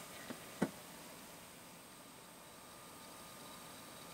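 Two faint, short clicks of hard plastic LEGO pieces being handled within the first second, then only a faint steady hiss of room tone.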